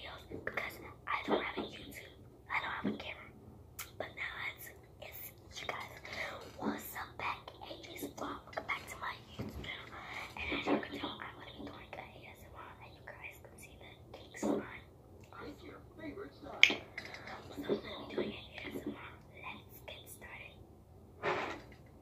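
A woman whispering close to the microphone in short, broken phrases, with one sharp click about two-thirds of the way through.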